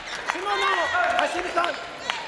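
Busy badminton hall: short shouted calls from players on nearby courts, several a second, with sharp clicks of rackets striking shuttlecocks.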